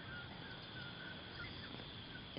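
Faint outdoor forest ambience: a steady high insect drone with faint, wavering bird calls.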